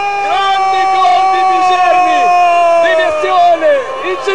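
A football commentator's long shouted goal cry, one high held note lasting nearly four seconds and dropping in pitch at the end, over a cheering crowd with other shouts.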